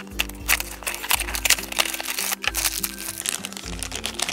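Packaging handled: a cardboard blind box opened by hand and the black plastic bag inside it crinkling, in many short crackles, over background music.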